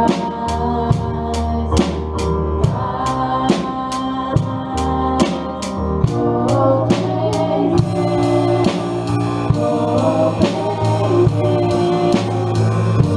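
Worship band playing live, with a drum kit keeping a steady beat under sustained instruments and singing voices. About eight seconds in, the cymbals come in brighter and fuller.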